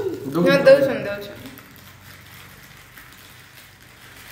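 A young child's brief high-pitched vocal sound, not a word, lasting about a second at the start, then only quiet room sound.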